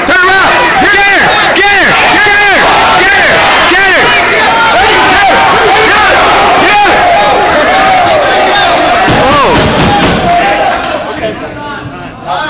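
Crowd of spectators cheering and yelling, many voices shouting at once close to the microphone, very loud, dying down near the end.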